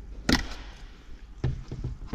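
A sharp plastic click about a third of a second in, the door panel's electrical connector unplugging, then a duller knock a little over a second later as the loose plastic door card is handled.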